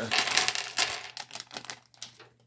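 Plastic minifigure blind bag crinkling as it is torn open, then small Lego parts clattering out onto a hard tabletop in a run of quick clicks during the second half.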